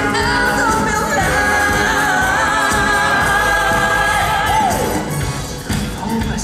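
Male crossover vocal group singing a long held note over a live band, with vibrato, ending in a downward slide about five seconds in; the music thins out briefly near the end.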